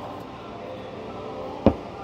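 A single sharp knock about one and a half seconds in, as a whetstone is set down into its wooden holder during a stone change, over steady low room noise.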